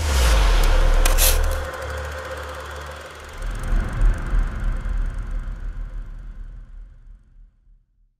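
Logo-sting sound design for an animated production-company logo: a sudden loud noisy hit with deep bass that dies away over a couple of seconds, then a pulsing low rumble that swells about three seconds in and fades out to nothing.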